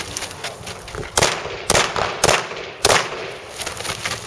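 Handgun shots: four sharp reports, about half a second apart, starting about a second in.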